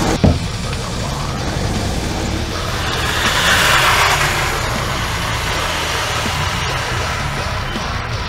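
Music with a steady beat, a single sharp bang just after the start, and a car driving past, loudest about three to four seconds in.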